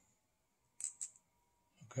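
Two quick light clicks about a tenth of a second apart, from small metal screws being pressed into the holes of a plastic valve bracket.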